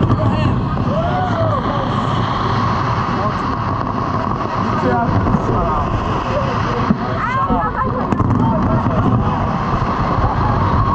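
Crowd of spectators talking and calling out at once, a dense mix of many overlapping voices over a steady low rumble.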